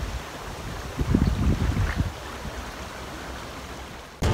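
Riverside ambience: the steady rush of a flowing river, with wind buffeting the microphone in low rumbles that are strongest between about one and two seconds in.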